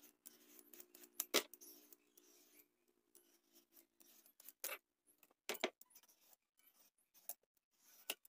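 Handheld vegetable peeler scraping strips of skin off an unripe green papaya: a series of short, irregular scraping strokes, the loudest about a second and a half in.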